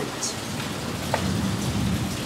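Steady rain falling, with a single light click about halfway through as plastic is handled.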